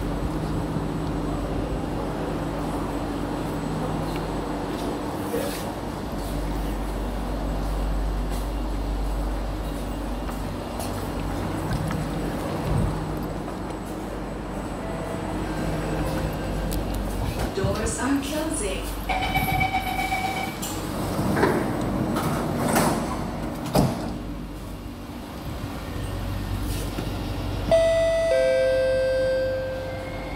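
Cabin noise of an SMRT C151B metro train (Kawasaki & CRRC Qingdao Sifang) running between stations: a steady rumble with traction-motor hum. A two-note tone sounds about two-thirds of the way in, and a falling two-note ding-dong chime near the end is the on-board chime that leads into the next-station announcement.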